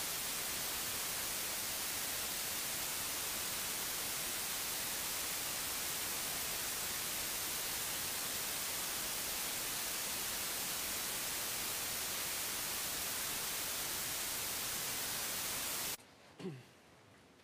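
Steady static hiss, even and unchanging, strongest in the high frequencies: the noise carried by a courtroom audio feed while the court's sound is muted.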